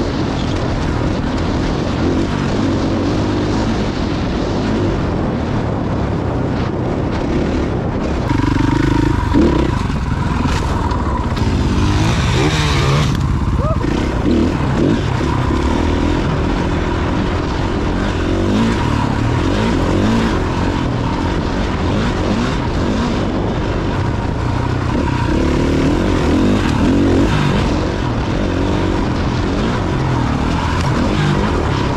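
Dirt bike engine running under way as the bike is ridden along a sandy desert trail, its note rising and easing with the throttle. A steady high whine comes in after several seconds.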